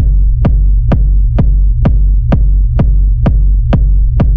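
Dark techno: a steady four-on-the-floor kick drum at a little over two beats a second, each hit with a quick downward pitch drop, over a continuous low bass drone.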